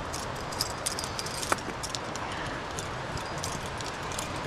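Climbing quickdraws and carabiners clinking and clicking as they are handled, with a brief metallic ring about a second and a half in, over a steady background hiss.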